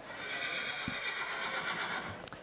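A Standardbred yearling horse whinnying: one long, high call lasting almost two seconds.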